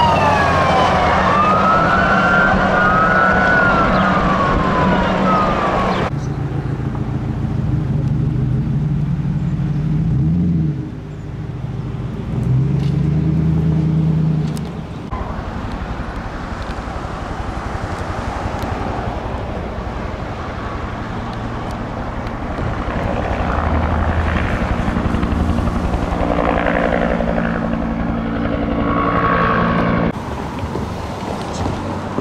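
A fire vehicle's siren wailing as a pickup drives past, its pitch sliding down and up, cut off abruptly about six seconds in. Next a vehicle engine running, its pitch dipping and climbing. From about halfway, the steady running of a Huey-type firefighting helicopter.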